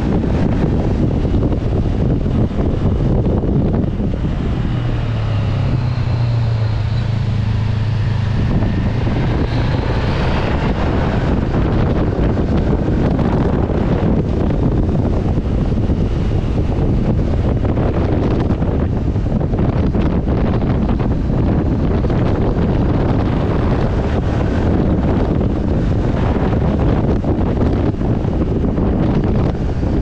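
Wind rushing over the microphone of a moving motorcycle, a loud steady roar throughout. The motorcycle's engine note comes through more plainly from about five to ten seconds in, then sinks back under the wind.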